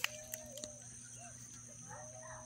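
Faint, distant animal calls: a few short, arched single-pitched tones, one at the start, a brief one about a second in and a longer one starting near the end, over a steady faint background hum.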